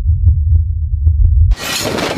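Film sound design: a loud, deep bass rumble with a few sharp ticks scattered over it, which cuts off abruptly about one and a half seconds in. A broad rushing noise takes its place.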